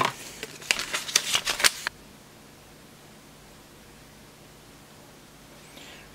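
A folded paper instruction leaflet being unfolded and handled, with a run of crisp paper crackles and clicks over the first two seconds, then only faint room tone.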